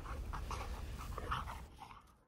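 A dog's faint, irregular breaths and small vocal sounds over a low background rumble, fading out near the end.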